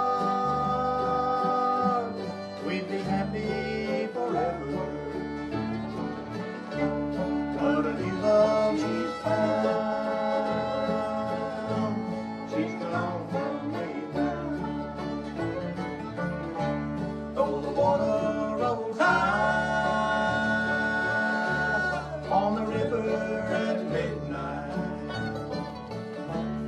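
Bluegrass band playing with mandolin, acoustic guitars, fiddle and banjo over a steady alternating bass rhythm, with long held melody notes at a few points.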